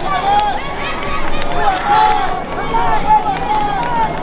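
Several voices calling out across an open soccer field during play, overlapping and without clear words, with a murmur of spectators behind.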